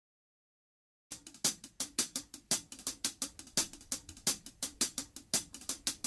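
A drum beat opening a song: steady hi-hat ticks with stronger drum hits about twice a second, starting after about a second of silence.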